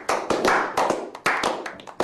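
A few people clapping their hands together, the claps overlapping unevenly.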